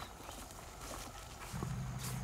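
Footsteps in rubber boots on a grassy pond bank: scattered soft knocks and clicks. About one and a half seconds in, a steady low hum comes in.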